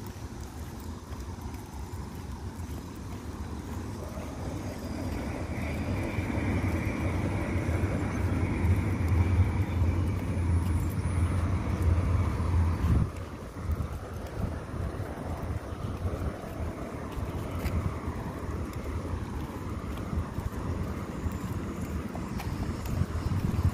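Outdoor low rumble, with no clear source in view, that builds over several seconds and drops off abruptly about thirteen seconds in, leaving a fainter background.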